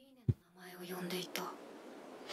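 Quiet, near-whispered speech: a soft voice says a short line, just after a brief sharp sound.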